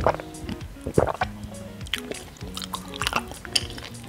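Background music with steady held notes, over close-miked chewing: a series of short wet mouth clicks and squishes.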